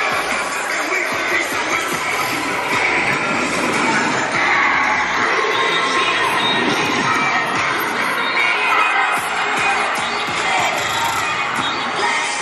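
A cheerleading squad shouting and cheering together, many voices at once, as they throw stunts, with music playing underneath.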